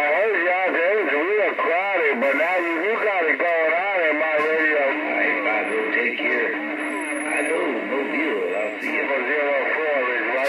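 A wordless voice coming over a Stryker SR-955HP CB radio's speaker, swooping up and down in pitch in a sing-song way, with a steady held tone for a couple of seconds past the middle. The next operator calls it "doing that kung fu".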